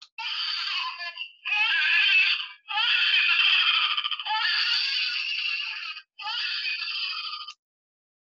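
RealCare Drug-Affected Baby electronic infant simulator playing its pained, high-pitched cry, in four wailing bouts with brief breaks. The cry is a recording of a real infant affected by cocaine, meant to mimic a drug-exposed newborn.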